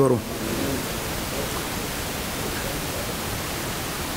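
Steady, even background hiss with no distinct events in it.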